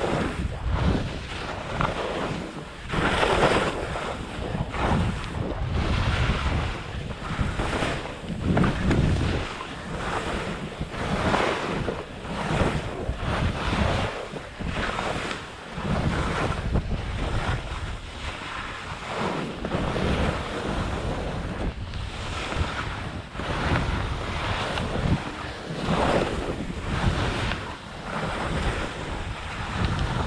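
Wind rushing over a ski-mounted action camera's microphone while skiing downhill, mixed with skis hissing and scraping through snow; the noise swells and fades every two seconds or so as the skier turns.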